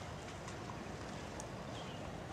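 Steady outdoor beach ambience at low tide: an even wash of noise, with a few faint short chirps.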